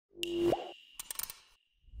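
Sound effects for an animated logo intro: a short pitched pop that bends sharply upward, with a high ringing tone held behind it, then a quick run of small clicks about a second in.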